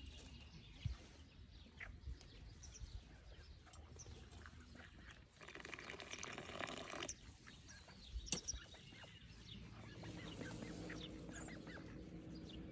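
Tea poured from a glass teapot into a small tea glass for about two seconds around the middle, over faint scattered bird calls.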